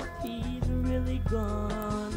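Country band music with bass and guitar, played from an old reel-to-reel tape recording.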